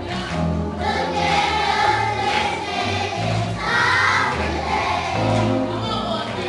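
Music: a choir singing over a steady bass accompaniment.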